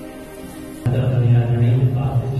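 Held musical notes fade, then about a second in a man's low voice starts chanting a liturgical line at Mass, steady and sustained.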